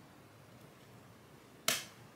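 A single sharp click near the end, over near silence: a DevTerm kit's core module snapping into place on its main board, a sign it has seated.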